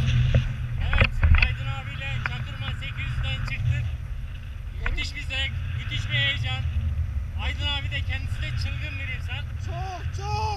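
Wind buffeting a pole-mounted camera's microphone on a tandem paraglider in flight, a steady low rumble, with a few knocks in the first second and a half. Over it a man yells in high, wavering cries, in fright.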